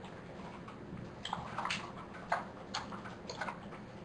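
Typing on a computer keyboard: a run of irregular key clicks starting about a second in and stopping shortly before the end.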